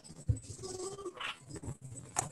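Background noise from participants' unmuted microphones on a video call: a sharp knock early on, then faint short pitched sounds and scattered clicks over a thin steady high whine.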